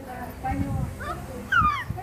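Young children's voices in short sounds, with a loud high-pitched squeal that falls in pitch about one and a half seconds in.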